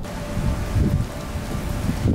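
Steady hiss with irregular low rumbles from wind and handling on the camera microphone as the camera is carried outdoors.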